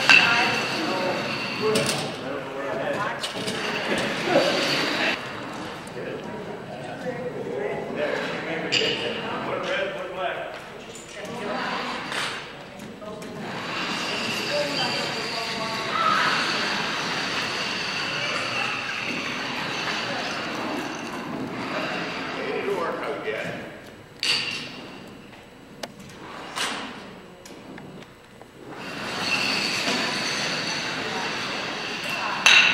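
Indistinct chatter in a large hall, with floor shuffleboard discs sliding across the wooden floor and a few sharp knocks as discs strike, the clearest near the end.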